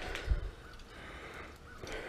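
Quiet handling noise as a small aluminum pot is held up and turned close to the camera, with one soft, low thump about a third of a second in.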